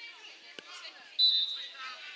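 Referee's whistle, one short sharp blast a little over a second in, the loudest sound here. It comes over players' voices on the pitch, and a single thud is heard about half a second in.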